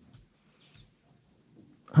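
Near silence: quiet room tone with a few faint, brief low sounds, then a man's voice starting right at the end.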